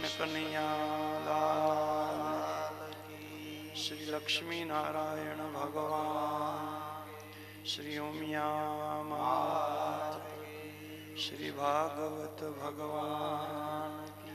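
A man chanting a devotional verse in a drawn-out, melodic voice over a steady musical drone, with a few sharp strikes scattered through it.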